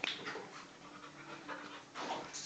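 A dog panting quietly.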